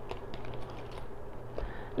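Light clicks and rustling from a coated-canvas tote and its metal hardware being handled as its top is opened, over a low steady hum.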